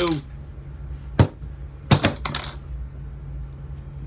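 Sharp metallic clicks and clinks of a just-opened brass Brinks padlock and its steel pick and tension tool being handled: one click about a second in, then a quick cluster around two seconds, over a steady low hum.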